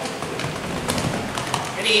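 Dog running through a fabric agility tunnel: a quick run of light paw taps with a low rustle of the tunnel.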